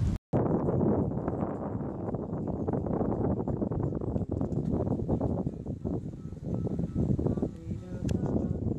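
Wind buffeting the microphone on a sailboat under sail: a loud, fluttering rush that starts after a brief gap.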